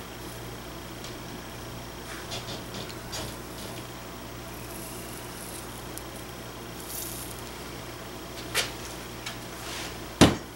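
Steady sizzling hiss of flux and solder on a hot steel barrel as a brush works a soldered tenon joint, with a few faint brush scrapes and one sharp tick about eight and a half seconds in.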